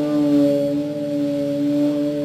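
A live band's electric guitar and bass holding one chord that rings on steadily, with no new notes struck.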